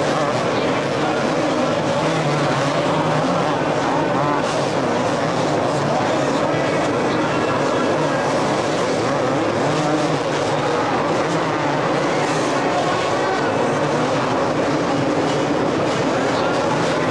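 Two-stroke motocross bikes racing, their engines revving up and down and overlapping continuously as riders work the throttle through the turns.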